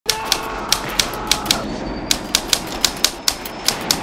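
Typewriter keys striking one by one, about three to four sharp clacks a second, over a steady background hiss.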